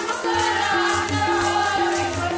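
Sikh keertan: a harmonium holds a sustained melody while voices sing together, over tabla drumming and the steady metallic jingle of a chimta keeping the beat.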